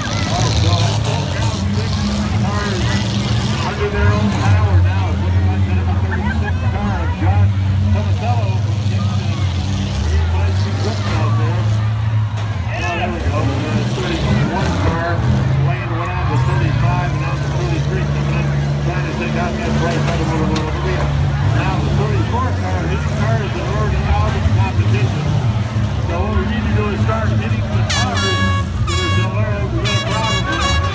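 Demolition derby cars' engines running and revving, their pitch shifting, under close crowd chatter; a horn-like tone sounds near the end.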